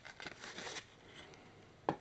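Abrasive scouring pad rubbed lightly against the painted plastic turret of a model tank, a short scratchy scrub in the first second that chips the top coat off a hairspray layer. A single sharp tap near the end.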